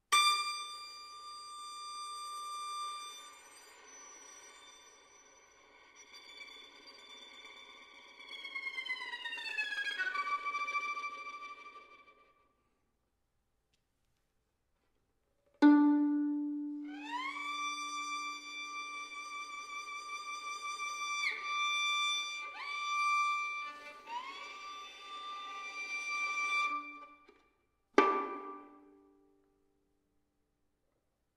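Solo violin playing long, high sustained notes joined by slow slides: one gliding downward about a third of the way in, then several sliding upward after the pause. Twice, about halfway and near the end, a low string is plucked sharply and left to ring away.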